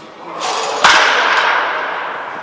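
A baseball bat hitting a pitched ball once with a sharp crack a little under a second in, after a short swell of noise, the crack dying away over the following second.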